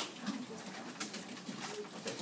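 Quiet classroom background: a faint murmur of low voices with a few light clicks.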